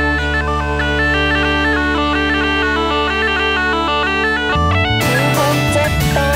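Bagpipe melody over steady low drones. The drones stop about four and a half seconds in, and the full band comes in with drums and cymbals and a sliding melodic line.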